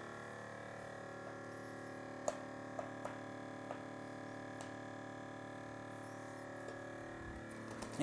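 Chamber vacuum sealer's pump running with a steady hum while it draws down the chamber, with a few light clicks two to five seconds in.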